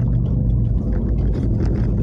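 Car engine and tyre noise heard from inside the moving car's cabin: a steady low hum and rumble.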